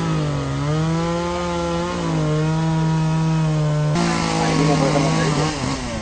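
Chainsaw running at high revs while cutting fallen tree branches, its pitch sagging briefly twice as it takes the load. The sound turns abruptly rougher about four seconds in, and the saw stops shortly before the end.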